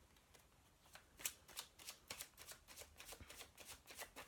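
Tarot cards being shuffled by hand, heard as faint, quick clicks several times a second, starting about a second in.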